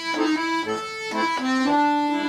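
Bayan, a Russian chromatic button accordion, playing a Russian pop melody in held reedy notes, with short bass notes sounding between them.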